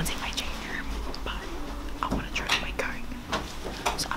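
Quiet, whispered speech close to the microphone.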